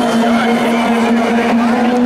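Loud electronic dance music over a club sound system, a low synth note held steady throughout, with crowd voices shouting over it.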